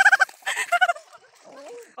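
Girls shrieking and giggling in quick high bursts during the first second, then fading to faint calls.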